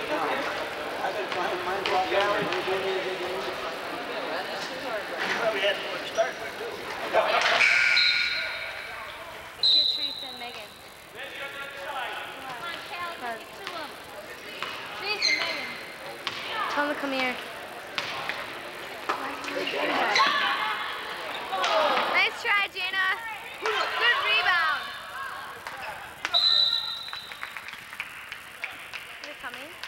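Basketball game sounds: players and spectators calling out, a ball bouncing on the court, and a referee's whistle giving short blasts about eight and ten seconds in and again near the end.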